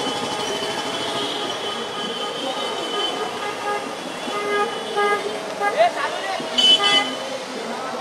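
Vehicle horns of a motorcycle and scooter procession honking: short toots through the middle and a louder cluster of honks near the end, over a crowd's voices.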